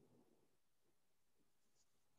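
Near silence: a pause in a man's speech, with only faint room tone.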